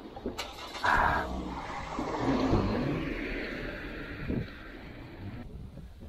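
A vehicle passing on the road: a rushing noise that swells to a peak midway and fades again, then cuts off suddenly near the end.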